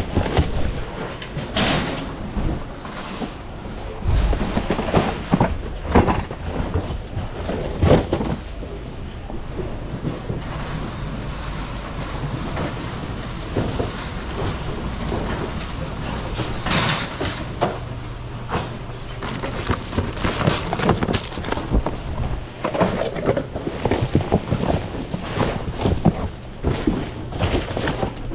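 Handling and rummaging through a bin of packaged goods: plastic bags and packaging rustling and cardboard boxes shuffled about, with several sharp knocks and clatters as items are moved. A shopping cart is rattled along as it is pushed.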